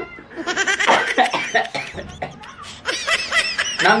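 A man laughing hard in two runs of quick bursts, with a short lull midway.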